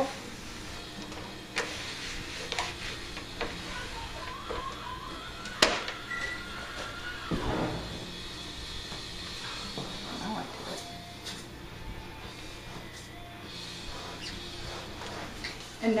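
Scattered handling knocks and taps as a heavy tiered cake is moved and set on a metal cake turntable, with one sharp knock about five and a half seconds in and a dull thud a couple of seconds later. Faint music plays underneath.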